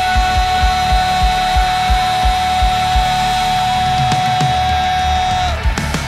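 Live worship rock band playing an instrumental passage. A single high note is held steady over a regular kick-drum beat, about three beats a second, and the held note stops about five and a half seconds in.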